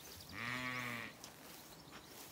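A Zwartbles sheep bleats once, a single call of under a second whose pitch rises a little and falls back.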